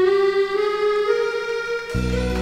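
Live orchestra playing an instrumental passage: a held melody note steps up once about halfway through over a thin accompaniment, and the low instruments come in together right at the end.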